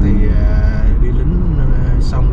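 Steady road and engine noise inside a moving car's cabin, with a man's voice partly over it.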